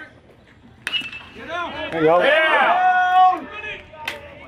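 A metal baseball bat pings off a pitch about a second in, a sharp crack with a brief ring. Spectators then shout and yell, loudest in the middle.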